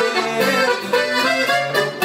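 Norteño-style instrumental fill between sung lines: a button accordion playing a melody over strummed acoustic guitar.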